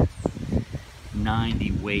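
A man's voice: a brief pause, then a drawn-out hesitation sound leading into the next word, over a steady low rumble.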